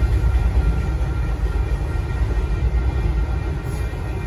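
Freight train autorack cars rolling past in a steady low rumble.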